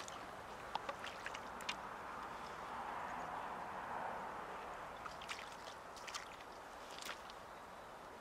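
Faint splashing and rippling of shallow river water as a hooked whitefish is handled at the water's edge, with scattered small ticks. The water sound swells a little about three to four seconds in.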